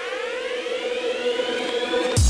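Electronic intro music: a synthesizer riser, several tones gliding upward together over a steady held note, building toward the drop.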